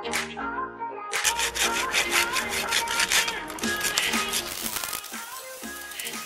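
Background music with plucked notes. From about a second in, a hacksaw rasps rapidly through a ficus root ball and its soil.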